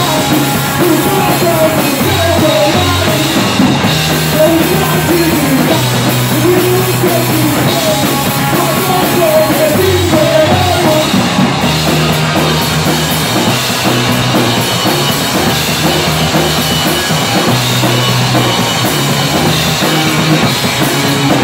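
Live rock band playing loudly: distorted electric guitar, bass guitar and drum kit. A wavering melody runs over the first half and gives way about eleven seconds in to a short, repeated riff.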